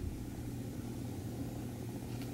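A steady low background hum, with no other distinct sounds.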